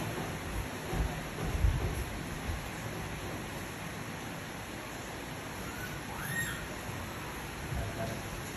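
Steady background hiss with a few soft low knocks in the first two seconds. About six seconds in, a baby monkey gives one short high squeak that rises and falls.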